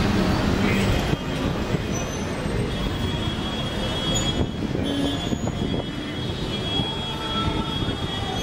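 Steady outdoor city street noise: traffic and a general hum of people. A thin, high, steady whine comes in about three seconds in and holds.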